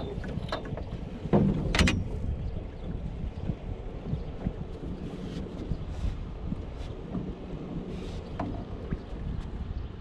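Wind buffeting the microphone over the steady wash of water around a small fiberglass boat, with a couple of sharp knocks on the boat about a second and a half in.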